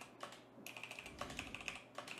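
Computer keyboard being typed on: a quick, faint run of keystrokes tapping out repeated letters and the Enter key, starting about half a second in.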